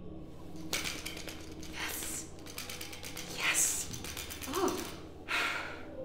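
A man gasping and breathing sharply behind his hand in shocked reaction, several short hissing breaths, with clothing rustle about a second in. A faint steady hum underneath.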